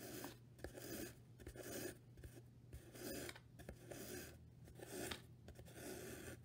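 Yarn being drawn through the warp strings of a cardboard weaving loom: faint, irregular rubbing strokes, about two a second, as the yarn and fingers slide over the cardboard.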